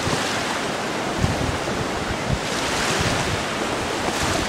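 Steady surf washing on a sandy beach, with wind buffeting the microphone in short rumbling gusts.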